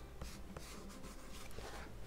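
A red crayon rubbed back and forth on sketchbook paper, a series of soft scratchy strokes as an area of a drawing is coloured in.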